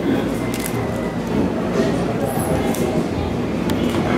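Background chatter of many voices with music playing underneath, and a few short clicks.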